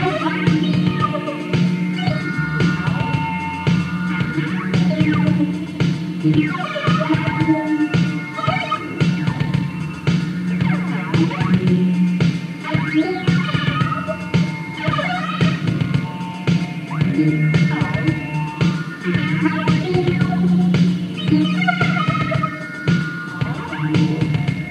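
Long electronic trance drone from two Korg Poly 61 analog synthesizers: a steady low tone under a quick, repeating arpeggio pattern triggered from a Boss DR-220 drum machine.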